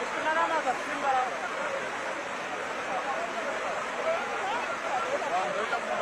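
Steady rush of a flooded river, with people's voices calling out over it, loudest about half a second in and again from about four to five and a half seconds.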